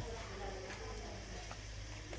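Faint crackle of kibbeh patties cooking on a charcoal grill: a few soft ticks over a low, steady rumble.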